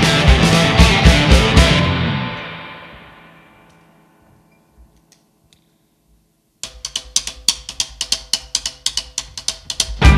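Live rock band with electric guitars and drum kit playing loud, then stopping short, the last chord ringing out and fading to near silence over about two seconds. About six and a half seconds in, the drums come back with a quick, even run of sharp ticks over held notes, building toward the full band's return.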